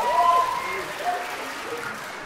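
Audience applauding in response, with a voice calling out at the start; the clapping dies away over the two seconds.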